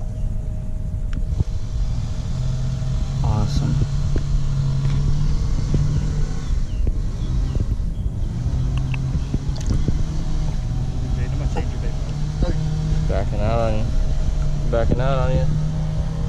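Boat motor running steadily at low speed, a constant low hum, with short untranscribed voices a few times.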